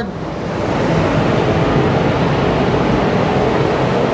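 Spray booth ventilation running: a steady rush of moving air.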